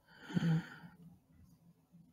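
A man's short breathy sigh with a brief low hum in it, lasting under a second.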